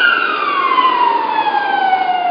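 A siren wail at its peak, then sliding slowly down in pitch.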